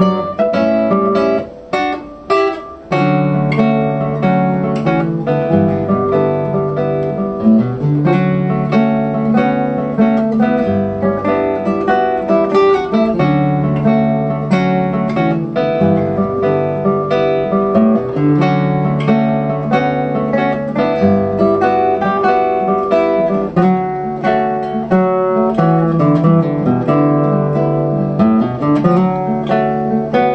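A duet of two nylon-string classical guitars, a 1988 Nejime Ono and a 2011 Sakae Ishii, playing fingerpicked melody over bass notes. The playing briefly thins out about two seconds in, then carries on steadily.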